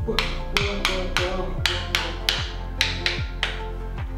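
Greenlandic Inuit frame drum (qilaat) beaten with a wooden stick, about two strikes a second. Each strike is a sharp knock followed by a short, low boom that slides down in pitch.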